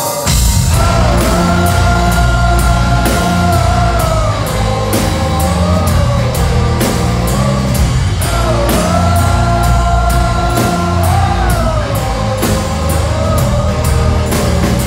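Live metal band playing loud through the PA: electric guitars, bass and a drum kit come in together right at the start, with steady cymbal strokes and a held melody line riding over the heavy low end.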